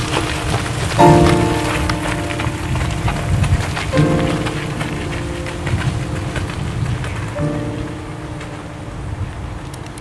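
Piano chords struck about every three seconds, each ringing on and fading, over a steady rough hiss. The playing grows quieter near the end.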